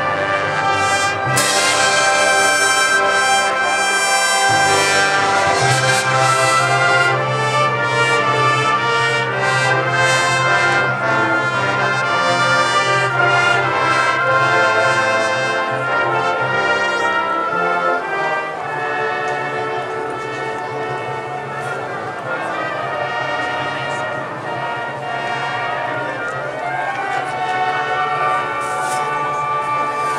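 Student concert band playing: brass and woodwinds in full, sustained chords over a steady bass line, easing into a softer passage about halfway through.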